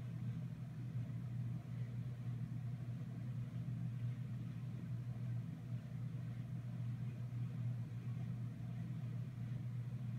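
A steady low mechanical hum runs unchanged, with no separate events standing out.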